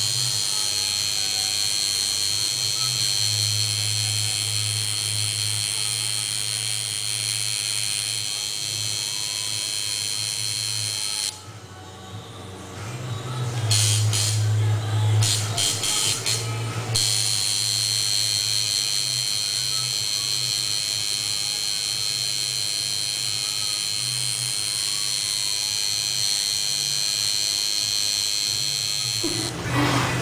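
A tattoo machine buzzing steadily against the skin as a tattoo is worked, with a low hum and a high whine; about eleven seconds in, the whine drops out for several seconds and then returns.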